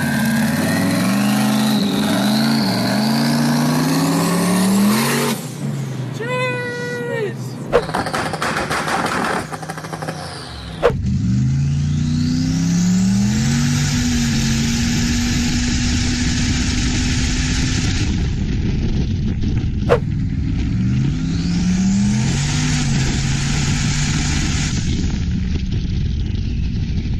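Big-turbo LSX V8 in a 1952 Willys Jeep accelerating hard through the gears, its pitch climbing and then dropping at each upshift, with a high whistle rising over the engine as it pulls. There are two separate runs, the second starting about eleven seconds in.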